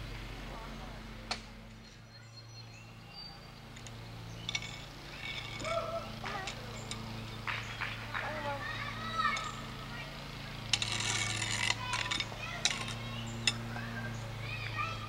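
Small children's voices and play noises, with a few sharp knocks and a brief clatter about eleven seconds in, over a steady low hum.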